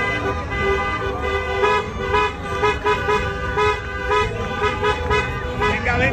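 Several horns tooting together in a street celebration after a football championship: some tones are held and others beep on and off in a rhythm, over a steady din.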